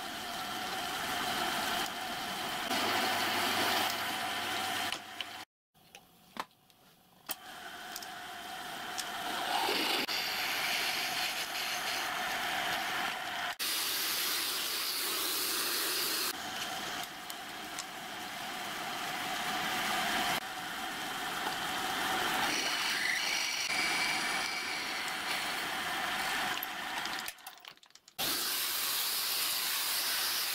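Pillar drill running, its bit cutting through stacked steel plates: a steady motor whine with the hiss of the cut. The sound drops out abruptly twice, about five seconds in and again near the end.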